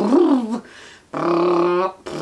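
A woman's voice making playful non-word vocal sounds: a short wavering slide in pitch, then, about a second in, a long steady held note.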